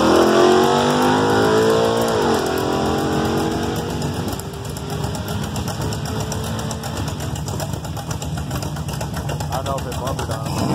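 Two drag-racing cars launching hard from the start line and accelerating away down the strip. The engine pitch climbs, drops at a gear change about two seconds in, then fades as the cars pull away.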